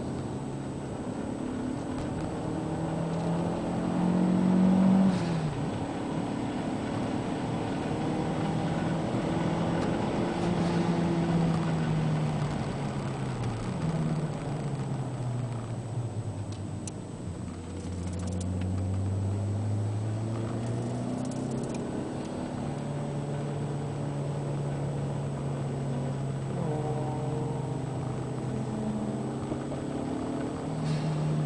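Toyota MR2 Turbo's turbocharged four-cylinder engine heard from inside the cabin while driven on track, revving up and dropping back repeatedly through the gears. The pitch falls to its lowest about halfway through, then holds fairly steady near the end; the loudest moment comes about four seconds in.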